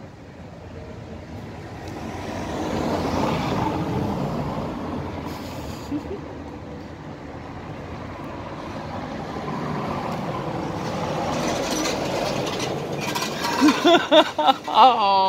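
Heavy road traffic passing close by: one large vehicle swells and fades about three seconds in, and another builds up towards the end.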